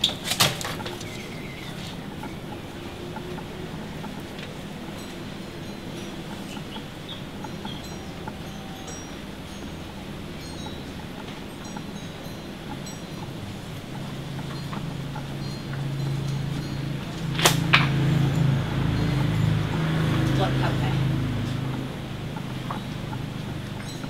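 Steady quiet background ambience with a low hum that swells for several seconds and then fades. A sharp click sounds just after the start and another about two-thirds of the way through.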